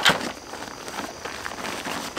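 Fabric of an ultralight backpack's roll-top closure rustling as it is rolled down by hand, with a sharp rustle at the start and softer, uneven rustling after.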